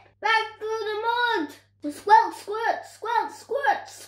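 A child's voice reading a story aloud, in short spoken phrases with brief pauses between them.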